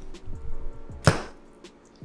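A pause with faint low sounds, then a single sharp click about a second in.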